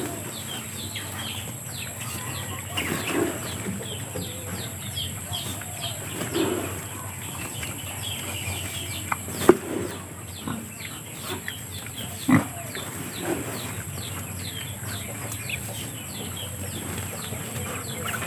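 Ground corn feed being scooped by hand from a woven plastic sack and poured into a plastic bucket: the sack rustles and the meal pours softly, with two sharp knocks about halfway through and a few seconds later. Birds chirp in the background.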